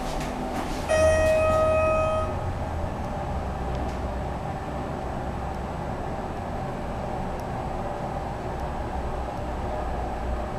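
Schindler 330A hydraulic elevator heard from inside the cab: a steady low hum throughout, a few clicks in the first second, and about a second in a single electronic chime tone held for just over a second, the car's floor signal.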